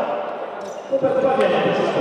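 A basketball bouncing on a hardwood court, with two sharp bounces about half a second and a second and a half in, amid voices echoing in a sports hall.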